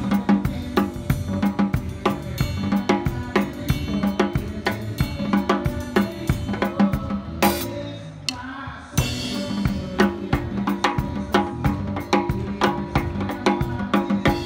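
Drum kit played with a live band: kick drum, snare and cymbals in a steady groove over electric bass. About seven and a half seconds in, the drums stop after one hit for about a second and a half, then come back in.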